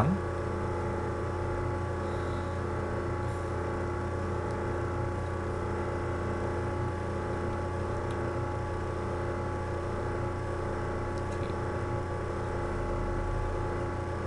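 Steady background hum made of several level tones over a low drone, unchanging throughout.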